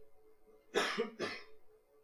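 A man coughs, a short cough in two bursts about half a second apart, about a second in.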